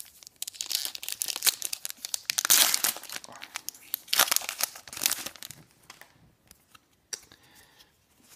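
Foil wrapper of a Pokémon booster pack crinkling as it is handled and torn open. Dense crackling for about the first five seconds, then only a few small rustles.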